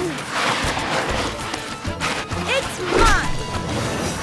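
Action music from a cartoon score, with crashing sound effects. A character gives two short vocal cries, about two and a half and three seconds in.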